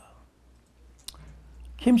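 A pause in a man's talk with a low hum, broken by one short sharp click about a second in; the man starts speaking again near the end.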